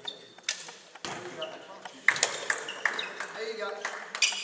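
Indoor court shoes squeaking on a sports hall floor, with several sharp knocks about two seconds in and players' voices in the large hall.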